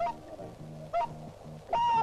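Whooper swan calling: a short call at the start, another about a second in, and a longer call near the end, over soft background music.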